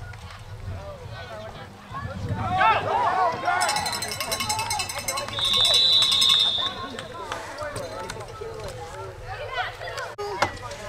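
Sideline spectators shouting as a football play runs, then a referee's whistle blown to stop play at the tackle: one long, shrill trilling blast a few seconds in, loudest for about a second just past the middle.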